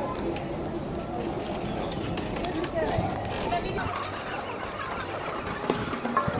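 Indistinct voices of people talking nearby over steady outdoor background noise.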